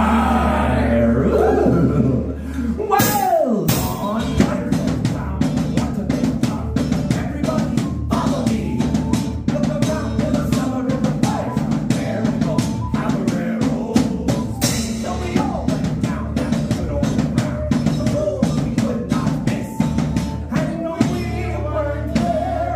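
Live Celtic folk band playing a fast song: a steady quick drum beat, guitar strumming and a whistle melody, after a sung shout at the start and a sliding drop in pitch about three seconds in.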